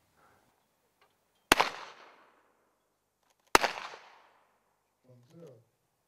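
Two shotgun shots about two seconds apart, fired at a pair of clay targets, each shot followed by a fading echo. A short, faint voice sounds near the end.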